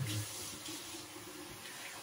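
Bathroom sink faucet running steadily into the basin, the stream splashing over a washcloth being wetted under it.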